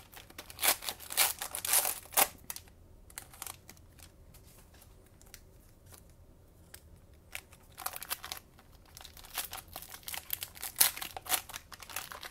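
Plastic trading-card pack wrappers crinkling and tearing as packs are ripped open by hand, in quick crackly bursts during the first two seconds and again from about eight seconds in, with a quieter stretch between.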